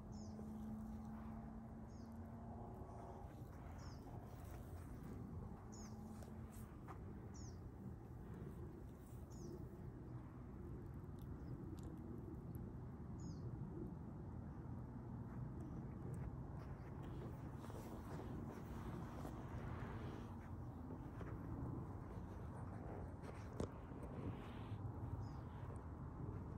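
Outdoor ambience: a bird repeats a short high chirp every couple of seconds through the first half, over a steady low background rumble.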